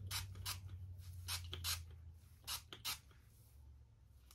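Pump spray bottle of CHI 44 Iron Guard heat protectant misting the weave in a quick series of short hisses, about eight sprays over the first three seconds.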